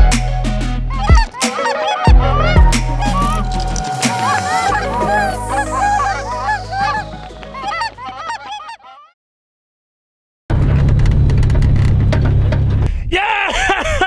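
Many Canada geese honking, layered over a music track with heavy bass. The calls and music fade out about nine seconds in, leaving a second and a half of silence. Then the bass comes back and a fresh burst of honking starts near the end.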